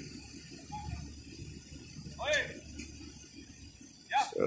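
Low, steady rumble of idling and slow-moving vehicles in the street, fading near the end. A brief voice sound cuts in about two seconds in.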